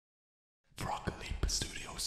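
A person whispering softly, starting about a second in.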